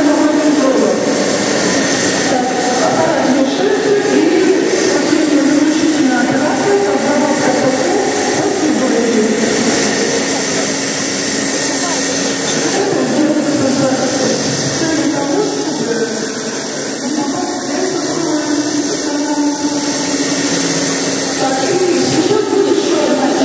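People talking over a steady background noise.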